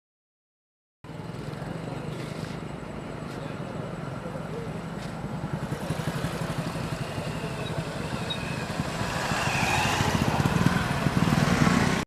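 Motorcycle engine running, growing louder as it approaches, with voices of a gathered crowd in the background.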